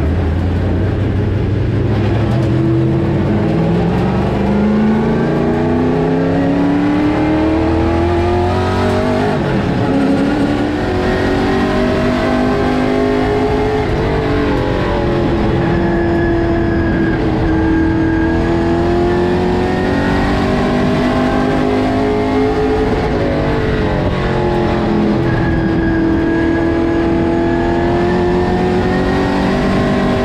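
Outlaw Late Model race car's V8 engine heard loud from inside the cockpit, pulling hard with a rising pitch over the first few seconds. It then holds at high revs, dipping briefly and climbing again several times as the driver lifts for the corners and gets back on the throttle around the short track.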